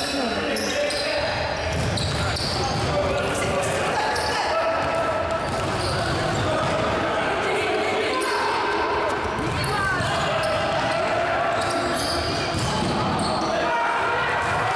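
Futsal game sound in an echoing sports hall: the ball kicked and bouncing on the wooden court, with many short sharp strikes, under indistinct shouting voices.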